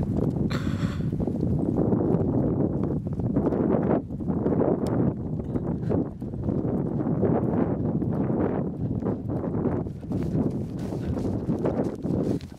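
Hurried footsteps through long grass as people run across a field, with a steady rumble of the carried camera and wind on its microphone under the footfalls.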